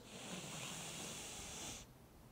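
A man drawing one long, deep breath in through his nose, steady for nearly two seconds and then cutting off.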